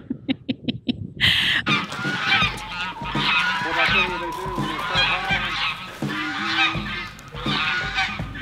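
A short laugh, then repeated honking calls of farm fowl, with wind rumbling on the microphone.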